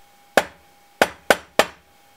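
Four knocks by hand. One knock comes first, then after a longer pause three more follow about a third of a second apart. Together they tap out the letter D in modified Morse code: a long, a short and a short, plus a terminating knock, with the pauses marking long and short.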